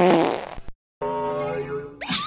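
Cartoon fart sound effect: a short burst whose pitch wobbles, then after a brief gap a longer, steadier buzzing one.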